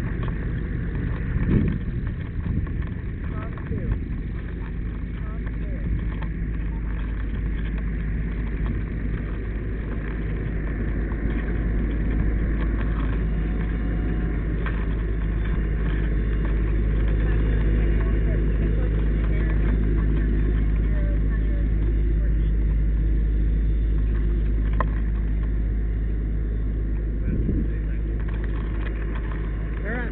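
Fire engine's diesel engine running steadily with a low, even rumble, growing louder through the middle of the stretch as the pump panel is approached.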